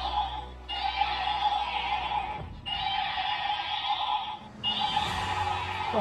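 A battery-powered toy dragon's sound chip plays an electronic sound effect through its small speaker. The effect loops in segments about two seconds long with brief gaps between them, over the low hum of the toy's walking motor.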